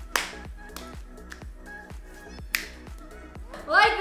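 A sharp hand slap from a high-five just after the start, and a second, similar sharp smack about two and a half seconds in, over background music with a steady beat.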